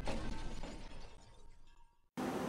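Tail of a glass smash: broken glass shards tinkling and settling, fading away to silence near the end.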